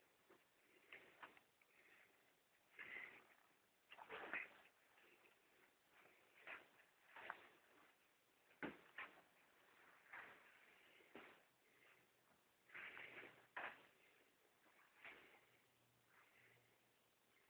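Near silence, with faint, irregular short knocks and rustles scattered throughout.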